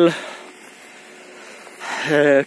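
A man's voice trails off at the start, then a pause with only faint steady background hiss, and a breath in just before he speaks again near the end.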